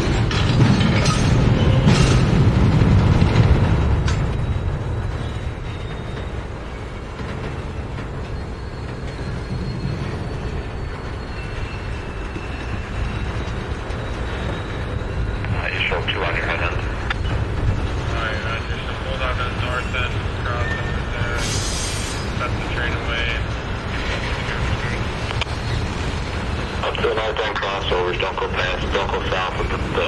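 Freight cars rolling slowly past on the rails: a steady low rumble of wheels on track, loudest in the first few seconds.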